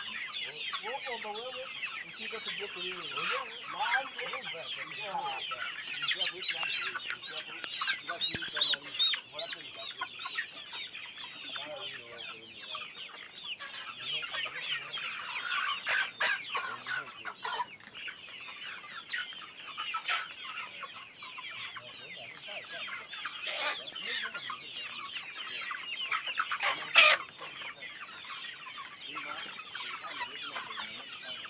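A large flock of chickens clucking and calling all together in a dense, continuous chorus. A few brief, sharp, louder sounds stand out, the loudest near the end.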